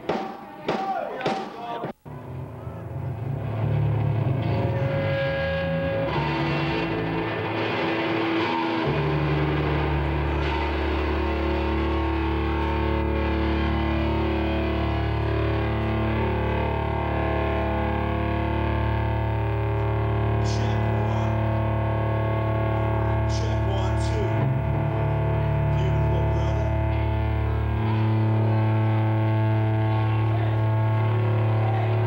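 Live rock band playing through amplifiers: distorted electric guitars and bass holding long, droning sustained notes that build up after a few sharp drum hits at the start. A brief audio dropout from the damaged VHS tape comes about two seconds in.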